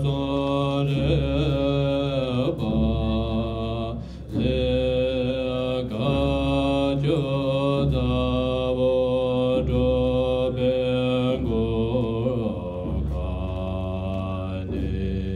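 Tibetan Buddhist monks chanting a puja liturgy, long held notes linked by short slides in pitch over a deep low drone, with a brief breath pause about four seconds in.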